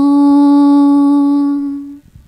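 A woman singing unaccompanied into a microphone, holding the last note of a Manoe Pucok syair, the Acehnese chanted verse for the bridal bathing rite. The note stays steady on one pitch and fades out near the end.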